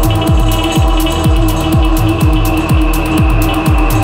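Techno track from a DJ mix: a four-on-the-floor kick drum, about two beats a second, each kick a falling low thump, under a held synth chord and ticking hi-hats.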